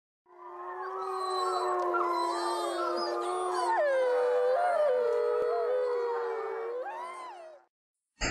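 A pack of wolves howling together, several overlapping howls sliding up and down in pitch over one long held note. It fades in at the start and fades out near the end.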